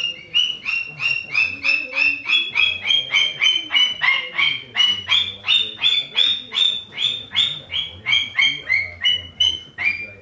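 Sulphur-crested cockatoo giving a long run of short, evenly spaced calls, about three or four a second, on a nearly even pitch that steps up a little midway and drops again near the end.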